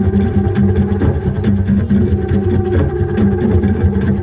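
Didgeridoo played live: a steady low drone with a regular rhythmic pulse in its overtones.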